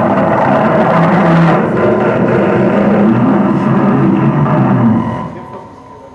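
Live improvised noise music: a loud, dense wall of layered noise and low sustained rumbling tones, which dies away about five seconds in to a much quieter residue.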